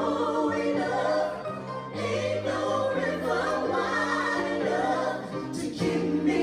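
A group of men and women singing together into microphones, several voices in harmony, over an instrumental backing with a steady bass line.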